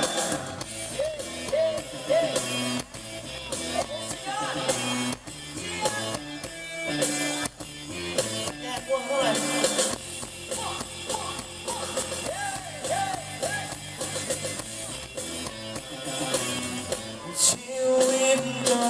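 Live band music with a steady beat, a man singing over it into a handheld microphone, heard through the stage PA.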